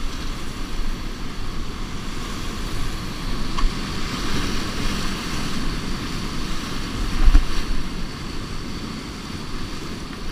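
Whitewater rapids rushing loudly around an open canoe as it runs through breaking waves, with a steady low rumble of water and wind on the microphone. A louder low thump comes about seven seconds in.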